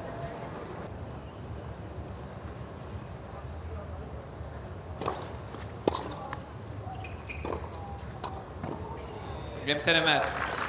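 Tennis rally: sharp racquet-on-ball hits roughly a second apart, beginning about halfway through over a low murmur of crowd voices. A loud burst of voices comes near the end.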